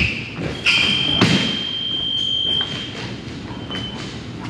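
Fencing action on a wooden strip: feet thudding in a lunge and blades clicking. The electronic scoring box sounds a steady high tone for about two seconds as a touch registers, then a short beep near the end.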